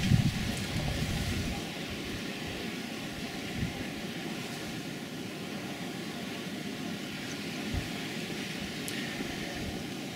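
Steady outdoor background noise with a few faint steady hum tones, and a low rumble of wind on the microphone in the first second or so.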